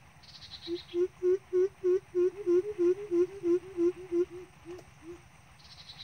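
Greater coucal's call: a long run of deep, evenly spaced hoots, about three or four a second, swelling and then trailing off fainter at the end. A short high trill sounds briefly at the start and again at the end.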